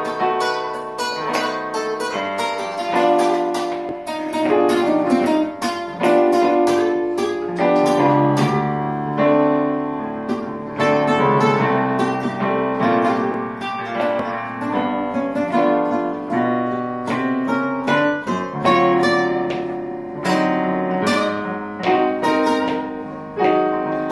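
Guitar playing a blues progression, picked notes and strummed chords at a steady pulse. It is a chromatic 12-key blues exercise that moves up a half step in key every six bars.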